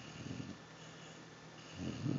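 Sleeping basset hound snoring through its open mouth: a snore at the start, a quieter breath, then the next snore building near the end.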